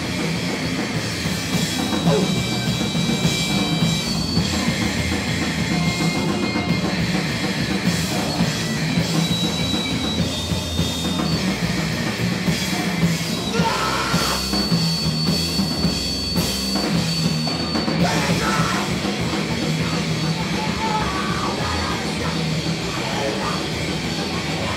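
Live hardcore punk band playing loud and steady, with distorted electric guitar and a drum kit. Thin, steady high tones are held over the music for a few seconds at a time.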